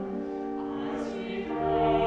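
A small choir singing sustained chords in a cathedral. A lower note enters about one and a half seconds in, and the singing swells louder near the end.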